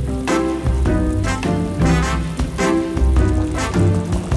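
Background music with quick struck and plucked notes, over the bubbling of a pot of eggs at a rolling boil.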